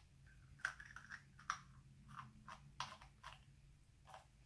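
Faint, irregular drips of water falling from a small hole in a capped plastic bottle into a plastic tub of water: a scatter of small plinks. With the cap on, air cannot get into the bottle, so the flow has dwindled to drops.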